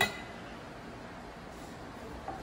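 A single sharp clink of metal or glass at the very start, then a low steady background hum.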